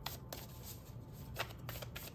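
A deck of oracle cards being shuffled by hand, the cards giving short, uneven clicks and slaps, a few more of them near the end, over a steady low hum.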